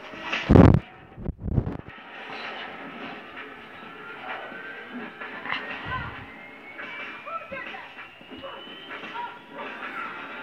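An animated film's soundtrack playing from a television and picked up across the room: music with voices and sound effects, including a slow rising whistle-like tone. Two loud short bursts of noise come within the first two seconds.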